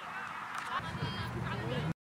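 Players' voices calling out across an outdoor soccer field during play, over a noisy background; the sound cuts off abruptly just before the end.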